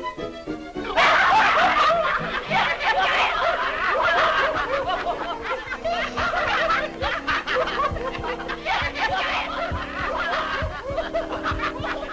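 A group of men laughing together, many voices at once, breaking out about a second in, over orchestral film music.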